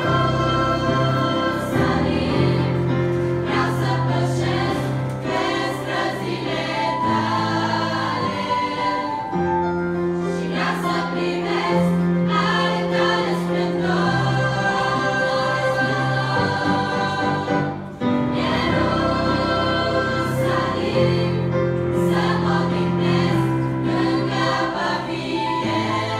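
A girls' church choir singing a hymn together over instrumental accompaniment that holds long low notes. The music dips briefly between phrases about eighteen seconds in.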